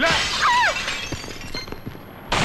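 A glass counter window smashing: a sudden crash that fades away over about a second and a half, with scattered small clicks of falling pieces. A person's short cry, falling in pitch, comes about half a second in.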